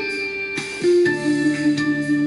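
Guitar music: a few plucked notes, then a held note that wavers steadily from about halfway through.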